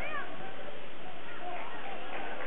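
Basketball shoes squeaking on a hardwood gym floor as players cut and stop: short, sharp squeals right at the start and again about one and a half seconds in, over a steady crowd din.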